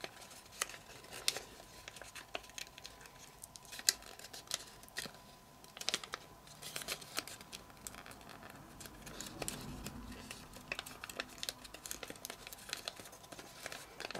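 Sheet of origami paper being creased and folded by fingers: soft, scattered crinkles and small clicks as the paper is pinched and flattened into place.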